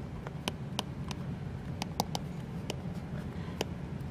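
Apple Pencil's plastic tip tapping on an iPad's glass screen during handwriting: light, irregular clicks each time the pen touches down between strokes, over faint room noise.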